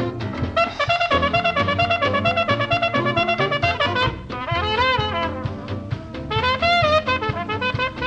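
1930s swing dance band recording playing an instrumental passage, brass with trumpet and trombone to the fore over a steady dance beat.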